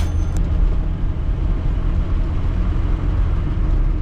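A small car's engine and road noise heard from inside the cabin while driving: a steady, loud low rumble with a broad hiss over it.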